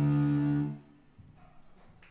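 Metal band's distorted electric guitars and bass holding one sustained chord, which stops abruptly about three-quarters of a second in, leaving only faint room noise.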